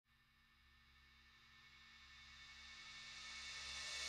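Opening of an instrumental electronic dance track fading in from near silence: a high, airy swell grows steadily louder from about a second and a half in.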